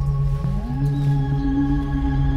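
Background music score: sustained synthesizer tones, one of them gliding up in pitch about half a second in, over a low pulsing bass.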